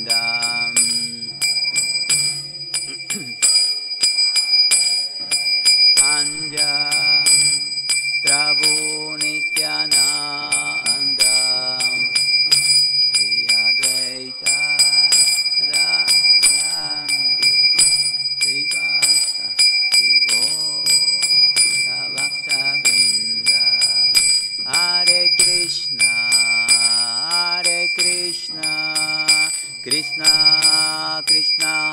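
Small brass hand cymbals (karatals) struck in a steady, fast rhythm, ringing continuously under a man's chanted devotional singing with a sustained low accompaniment.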